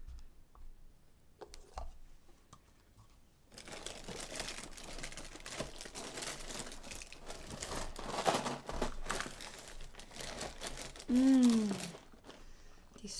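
Plastic inner bag of a cereal box crinkling as it is pulled open and rummaged, starting a few seconds in. Near the end there is a short vocal sound that falls in pitch.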